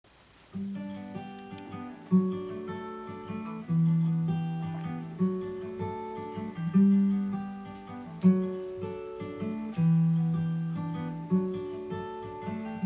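Solo acoustic guitar playing an introduction on its own, a new chord picked about every second and a half and left to ring and fade. It comes in about half a second in, after a brief quiet.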